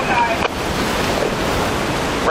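Wind rushing on the microphone over the wash of breaking waves, a steady noise with no distinct engine tone.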